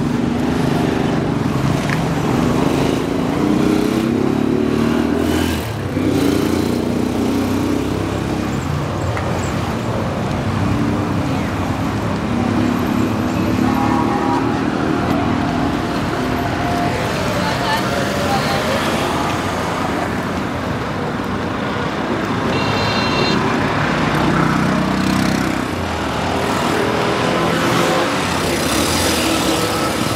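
Busy city street traffic: car and auto-rickshaw engines running and vehicles passing, with people's voices mixed in.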